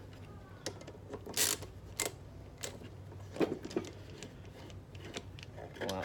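Hand screwdriver working the screws out of a wooden instrument end block: a few scattered metal clicks and scrapes.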